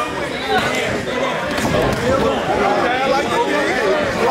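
Crowd of spectators talking and calling out, many voices overlapping and echoing in a large hall.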